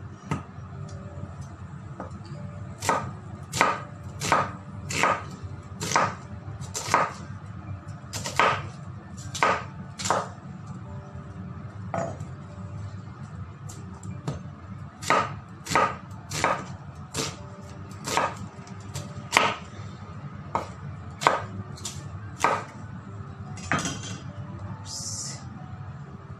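A kitchen knife slicing an onion on a wooden cutting board: sharp knocks as the blade goes through the onion and hits the wood, about one or two a second in uneven runs with a couple of short pauses.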